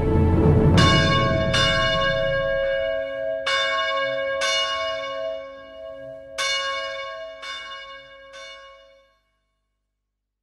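Church bells struck about seven times at uneven intervals, each stroke ringing on with a clear tone, over the fading end of a song. The ringing cuts off abruptly near the end.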